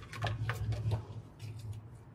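A hand handling a card tag hung on a shift lever: a quick run of short clicks and rustles in the first second, a few more about a second and a half in, over a low steady hum.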